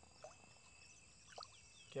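Near silence: a faint steady insect drone, likely crickets, with a couple of faint small knocks.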